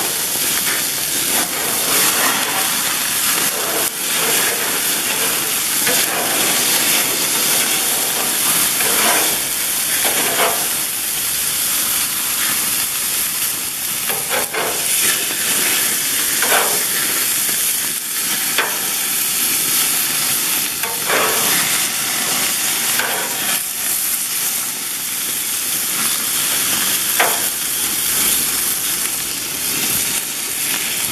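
Thick beef burger patties sizzling steadily on a grill grate over open flame, their fat flaring up in the fire, with an occasional short crackle.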